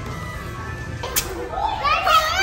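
Children playing and calling out over background music, with a high child's voice rising near the end.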